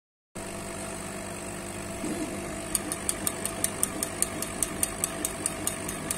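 Laser stamp-engraving machine running with a steady hum, then, from near the three-second mark, a regular ticking about five times a second as its head sweeps back and forth engraving wood.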